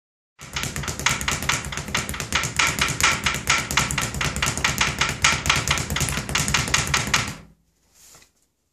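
Speed bag punched in a continuous fist-rolling rhythm, rattling off its wooden rebound platform several times a second. It starts just under half a second in and stops suddenly about half a second before the end.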